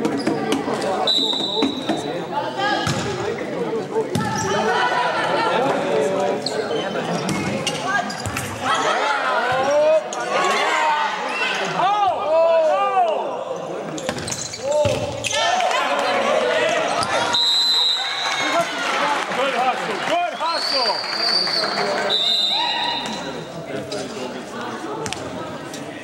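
Volleyball match in an echoing gym: players and spectators shouting and cheering over the thuds of the ball being hit and bouncing. A referee's whistle blows about a second in and several more times in the last seven seconds.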